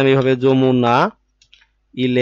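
A man's voice holding a drawn-out, sung-out word for about the first second, then a few faint clicks from a computer keyboard as text is typed.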